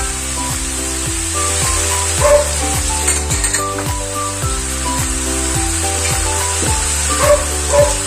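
Cubed pork sizzling as it fries in a pan, stirred now and then with a wooden spoon, under background music with a melody and a steady beat.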